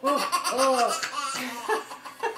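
Toddler laughing hard, a quick string of high-pitched belly laughs.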